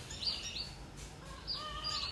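Small birds chirping in the background: a quick series of short, high chirps repeating every few tenths of a second, with a few softer, lower warbled notes partway through.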